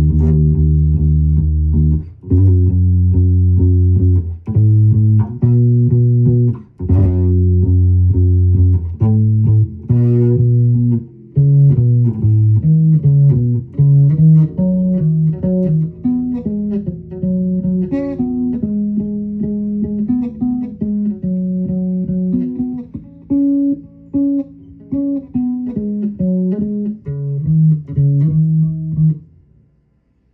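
Electric bass guitar played solo: long held low notes for the first several seconds, then a moving melody of shorter notes, stopping just before the end.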